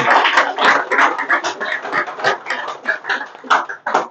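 Audience applauding. The clapping thins out to scattered single claps and stops near the end.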